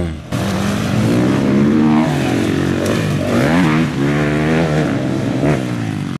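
Motocross dirt bike engines revving up and down, the pitch rising and falling again and again as the bikes ride the track. The sound cuts in about a third of a second in.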